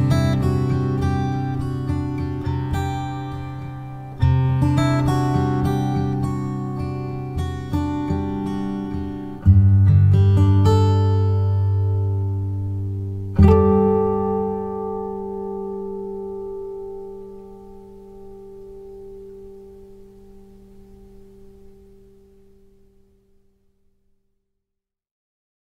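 Slow acoustic guitar music: chords strummed a few seconds apart and left to ring. The last chord, struck a little past halfway, fades out over about ten seconds to silence, ending the piece.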